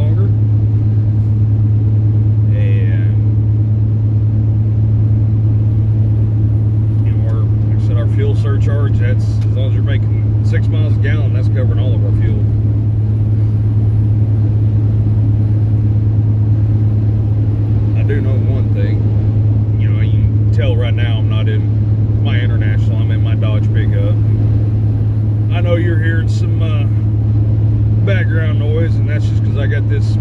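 Steady low engine and road drone inside the cab of a 2001 Dodge pickup cruising down the road, holding even throughout, with faint talking coming and going over it.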